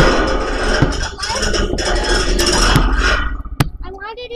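Loud, rough noise of wind buffeting the microphone, with a basketball bouncing on the pavement as three short thuds about a second apart.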